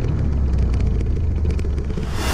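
Motorcycle riding along a dirt road: a low, steady rumble of engine and wind on the camera's microphone.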